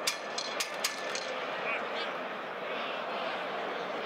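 Football stadium pitch ambience: a steady wash of crowd and pitch noise with indistinct voices, and a quick run of sharp clicks in the first second or so.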